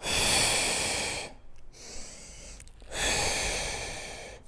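A man breathing hard while doing a 45-degree back extension: two long, loud breaths about two seconds apart, each lasting more than a second.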